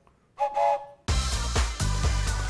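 A toy train whistle blown once briefly, a steady chord lasting about half a second. About a second in, upbeat theme music with a steady beat starts abruptly.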